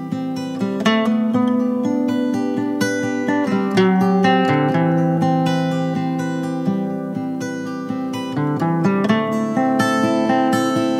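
Acoustic guitar music with no singing: plucked notes and chords ringing on, in the instrumental opening of a song.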